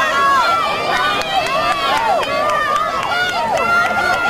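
Spectators yelling and cheering, many high-pitched voices calling over one another without a break.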